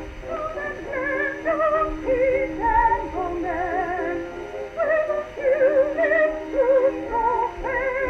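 An early record playing on a 1914 Victrola VV-X acoustic gramophone: a melody of quick notes sung or played with wide vibrato. The sound is thin and narrow, with little bass or treble.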